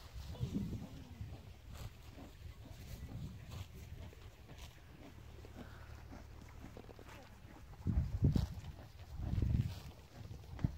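A horse grazing right by the microphone, cropping and chewing grass with scattered short crunches. Two louder low puffs come near the end.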